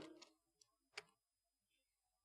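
Near silence: quiet room tone with a few faint clicks just after the start and one sharper faint click about a second in, a computer key being pressed, the Enter key that runs a typed line.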